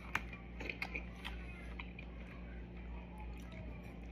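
A man chewing a mouthful of creamy pasta, with a few sharp wet mouth clicks in the first second and a half and softer chewing after, over a steady low hum.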